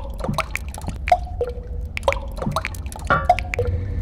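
Water drops falling and plinking at uneven intervals, some leaving a short ringing tone, over a steady low rumble: a composed dripping soundscape.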